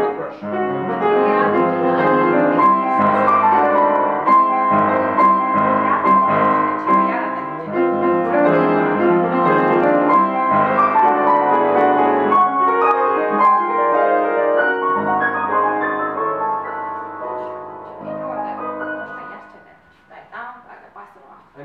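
Grand piano playing a classical passage. The notes thin out and grow quieter over the last few seconds and stop just before the end.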